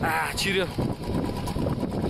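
A person's voice speaking briefly near the start, over steady low background noise.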